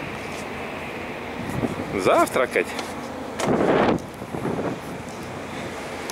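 Steady wind noise on the open upper deck of a cruise ship, with a man shouting "Ура!" about two seconds in. A little after the shout comes a loud, short rush of noise, the loudest moment.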